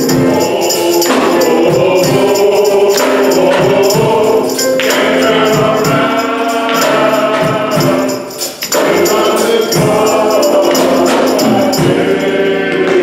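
Men's chorus singing a gospel song in harmony with band accompaniment, with a brief break in the sound about two-thirds of the way through.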